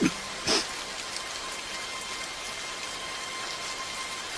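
Steady rain falling, with two short sounds near the start, about half a second apart.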